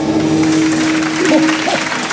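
Audience applause breaking out over a gospel choir's final held chord, which fades out near the end.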